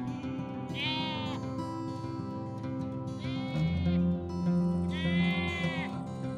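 Sheep bleating three times, about two seconds apart, the last call the longest, over background music with steady held tones.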